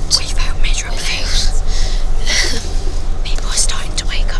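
Whispered talk close to the microphone, breathy and without voice, over the steady low drone of a coach's engine and road noise.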